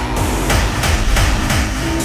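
Hard tekno electronic music from a live set: heavy bass under a fast run of percussive hits, about three a second, with a steady synth tone coming in near the end.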